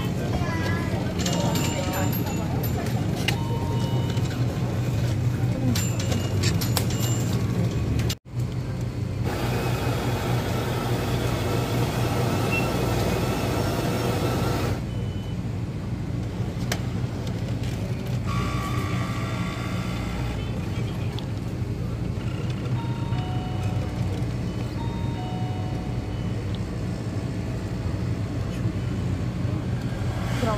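Jura automatic coffee machine brewing espresso into an iced latte, its pump giving a steady low hum throughout, with a brief break about eight seconds in. Faint voices and music sound in the background.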